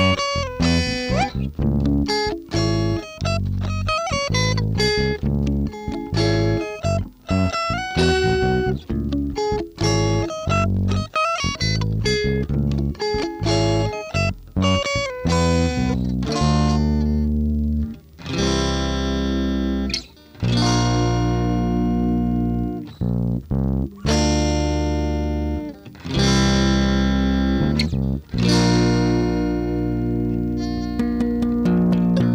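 Instrumental rock riff on electric guitar and bass: quick, separate notes for the first half, then long held chords from about halfway, cut by short stops roughly every two seconds.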